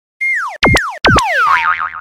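Cartoon boing sound effects of an animated channel intro: three sliding tones that drop in pitch and spring back up, then a quickly wavering tone near the end.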